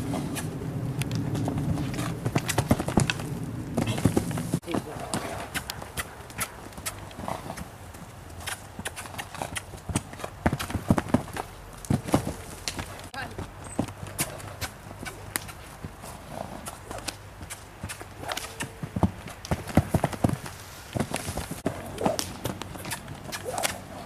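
Hoofbeats of a young mare cantering loose on dirt footing: quick, irregular clusters of hoof strikes that come and go as she circles.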